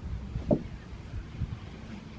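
Low, gusty rumble of wind on the microphone, with one short soft sound about half a second in.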